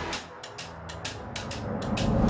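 Background music: held low notes under light, ticking percussion, growing louder toward the end.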